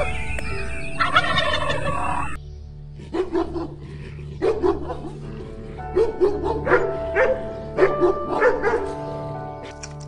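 Domestic turkey toms gobbling, with a loud gobble about a second in, until a sudden cut a little after two seconds. Then a dog gives a run of short barks over a steady droning music bed.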